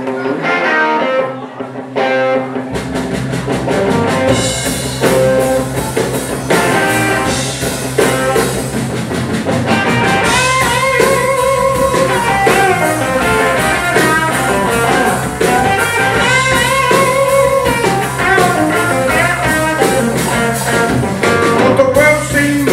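Live blues band: an electric guitar plays the opening riff alone, and bass guitar and drum kit come in about three seconds in. The guitar then plays lead lines with bent notes over the steady bass and drum groove.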